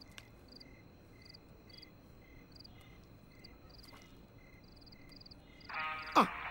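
Faint chirping of night insects, a short pulse repeating about twice a second. Music comes in just before the end.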